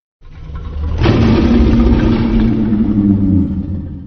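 Godzilla (2014) creature sound effect: a long, deep, rumbling roar that swells in during the first second, holds on a low pitch, and fades out near the end.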